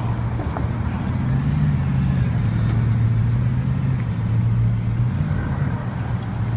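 Bugatti Veyron's quad-turbocharged W16 engine driving past at low speed, a steady low rumble that swells about a second and a half in and then eases as the car moves away.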